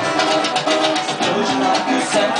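Live band music driven by two strummed acoustic guitars in a steady rhythm, with held notes sounding above the strumming.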